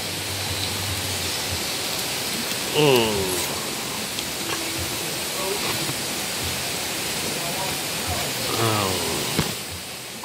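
A steady rushing hiss, with brief voices about three seconds in and again near the end.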